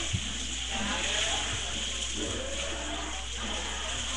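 Faint, muffled voices in the room over a steady hiss and low electrical hum.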